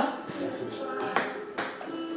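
A ping-pong ball making a few sharp, light clicks on the table and paddle, spaced about half a second to a second apart, over steady background music.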